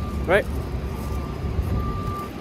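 City street traffic, heard as a steady low rumble.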